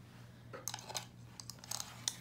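Faint handling sounds: a few light taps and rustles as paper paint-chip cards are set down on a metal tray, over a low steady hum.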